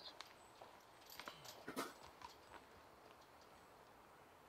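Near silence: faint outdoor ambience with a few faint taps between one and two seconds in.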